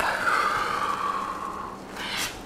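A long breath out from a person, a breathy hiss that slowly falls in pitch and fades out near the end.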